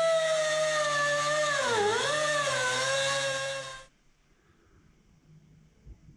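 Angle grinder with a cut-off wheel cutting down the metal spacer of a Supra MKIV clutch pedal assembly: a loud, high whine that dips in pitch about two seconds in, then stops abruptly shortly before four seconds.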